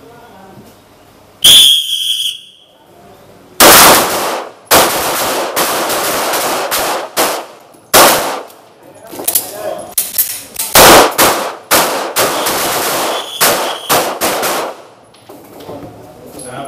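9 mm pistols fired rapidly by several shooters at once, the shots overlapping and echoing, from about four seconds in until shortly before the end. About a second and a half in there is a short high-pitched start signal.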